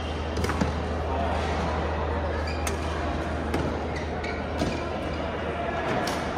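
Badminton rally: a racket hitting a shuttlecock several times, sharp cracks roughly once a second, in a big echoing indoor hall with a steady low hum underneath.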